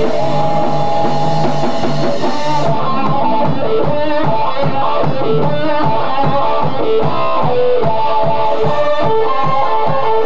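A live rock band playing an instrumental passage: electric guitar, bass and a steady drum-kit beat, with a violin bowing sustained notes over them.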